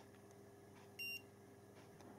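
Handheld infrared thermometer giving one short, high beep about a second in as it takes a reading, over near silence.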